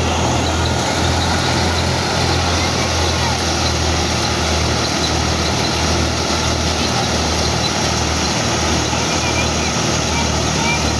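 Tractor-driven wheat thresher running steadily under load, a loud, even noise of the threshing machine over the low hum of the tractor engine driving it.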